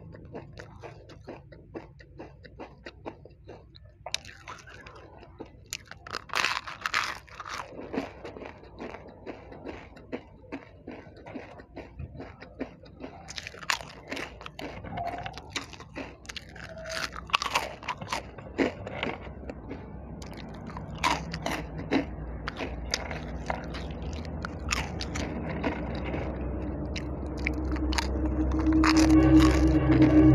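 Close-up eating of crispy snacks, a rolled wafer and crinkle-cut potato chips: crisp bites and crunchy chewing in clusters of sharp crackles between quieter chewing. Over the last few seconds a low hum grows louder.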